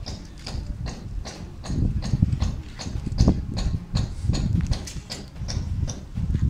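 Steady rhythmic ticking, about four sharp clicks a second, over a low rumble that swells and fades.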